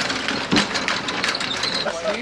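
Rapid ratcheting clicks from a hand-worked ratchet mechanism on a home-built car-top canoe loader, with one louder thump about half a second in.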